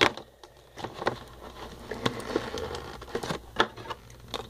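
Doll packaging being handled as the doll is worked out of its box: a sharp click at the start, then rustling and scattered clicks and taps.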